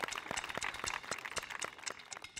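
A small group of children clapping: scattered, uneven hand claps that thin out near the end.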